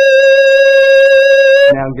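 A person's voice holding one loud, steady high note on a vowel, the sustained phonation asked of someone under laryngoscopy of the vocal folds. It stops about 1.7 seconds in.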